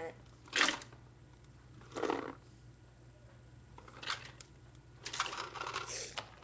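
Handling sounds of a plastic paintball hopper and its homemade tennis-ball-can-lid speedfeed: a sharp knock about half a second in, a duller knock at about two seconds, then lighter clicks and rustling near the end.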